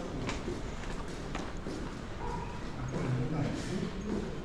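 Indistinct voices of people talking, with a few sharp footsteps of shoes on a tiled floor near the start.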